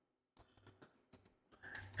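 Faint computer keyboard typing: a scatter of soft, irregular key clicks.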